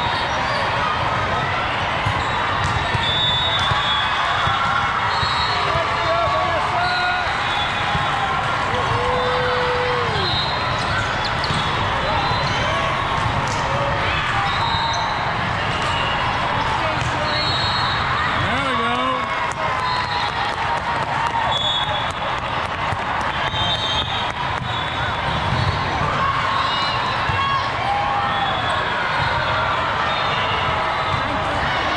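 Busy volleyball hall: a steady hubbub of many players' and spectators' voices, with frequent sharp hits of volleyballs being struck and bouncing on the court floor, echoing in the large hall.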